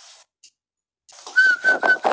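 Three short whistle-like notes at one pitch, close together, coming in after a brief dead gap in the sound.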